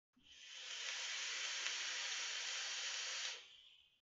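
A long hit drawn through a Vandy Vape Bonza rebuildable dripping atomizer: a steady hiss of air pulled past the firing coils. It lasts about three seconds and tails off shortly before the end.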